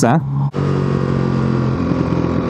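Motorcycle engine running at a steady speed while riding, with wind and road noise; the engine note shifts slightly near the end.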